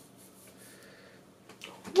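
Faint rustling and light ticks of in-ear earbuds being handled and pushed into the ears. A man's voice starts a loud rising 'woo' at the very end.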